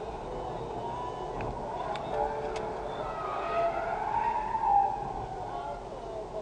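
Dashcam recording of a car driving at speed on an expressway, with steady road and engine noise. About halfway through, a whine rises and then falls, and a few sharp clicks come just before it.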